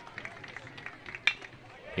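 Faint crowd noise in a ballpark, then, a little over a second in, a single sharp crack of a metal baseball bat striking a pitched ball for a line-drive hit.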